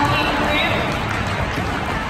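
Sports-hall crowd chatter mixed with quad roller skates rolling across the hard court floor, with no single standout event.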